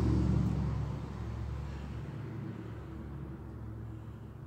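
Low rumble with a steady hum, loudest in the first second and then easing to a quieter, steady level.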